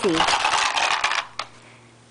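Small hard plastic toy pieces rattling and clattering for about a second, then a single click.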